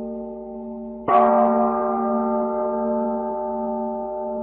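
A bell struck once about a second in, its ringing tones sustaining and slowly fading over an already sounding held tone, as used to open Buddhist sutra chanting.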